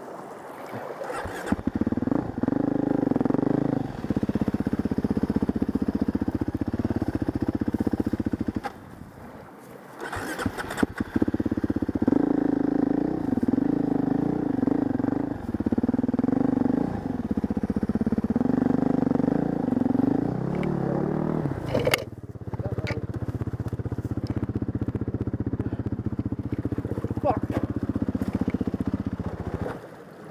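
Husqvarna dirt bike engine starting about a second in, then running and revving up and down. It drops away briefly near nine seconds and picks up again, then settles to a steadier run from about two-thirds of the way through.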